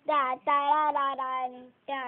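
A child singing wordless syllables in a string of short held notes, all at about one steady pitch.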